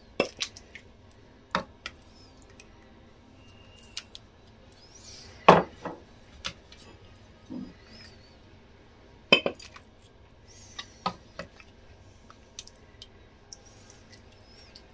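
Ladle knocking and scraping against a stainless steel pot and clinking on ceramic bowls as stew is served, in scattered sharp knocks, the loudest about five and a half and nine seconds in.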